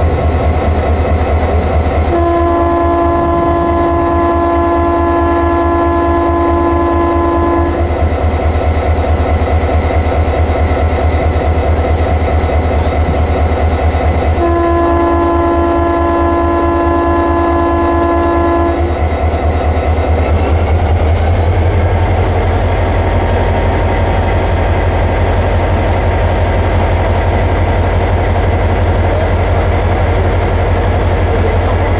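Diesel-electric freight locomotive idling with a steady low rumble, with two long blasts of a multi-tone air horn sounding a chord of several notes, the first about two seconds in and lasting about five seconds, the second about fourteen seconds in and lasting about four seconds. About two-thirds of the way through, the engine note rises and stays higher.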